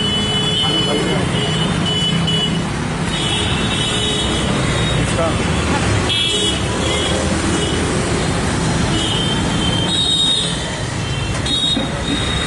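Busy street noise: a mix of people's voices and road traffic, with short horn-like toots sounding on and off.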